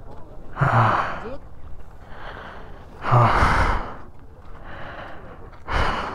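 A person breathing hard close to the microphone: about five breaths, louder exhales alternating with softer inhales. The breathlessness fits the thin air at the lake's height of about 17,800 ft.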